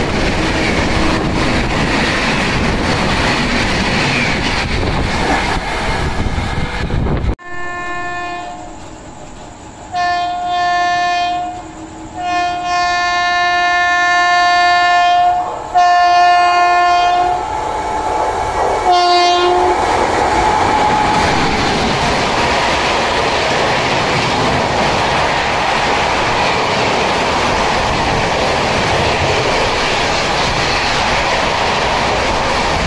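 Passenger coaches of an express train passing at high speed; the sound cuts off abruptly a little after seven seconds. Then a WAP7 electric locomotive's horn sounds in about five blasts as it approaches, the third the longest. From about twenty seconds its coaches pass at about 130 km/h with loud wheel and rail noise.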